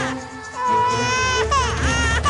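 Recorded dance-music track with a baby crying mixed into it: a long held wail, then a shorter one that rises and falls.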